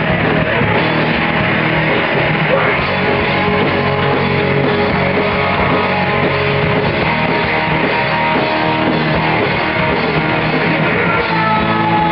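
Rock band playing live: electric guitars with bass and drums, loud and continuous.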